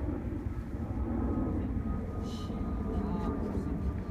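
Wind rumbling on the microphone, with a short swish about halfway through as a long surf-casting rod is whipped through an overhead cast.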